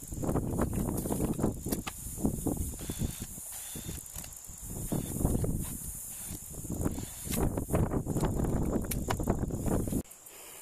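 Chain-link fence wire being handled and pulled by hand, rattling and scraping, with scattered clicks and knocks and rustling grass.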